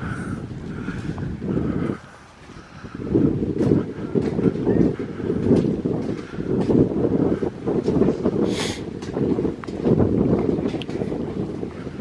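Wind buffeting the camera's microphone: a low, gusting rumble that drops away briefly about two seconds in, with a short hiss about three-quarters of the way through.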